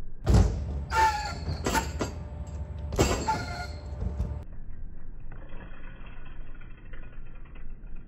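BMX bike on a skatepark ramp, played back slowed down: a series of heavy thumps and rattles, four of them in the first three seconds, each with a long low rumble. A faint steady hum follows near the end.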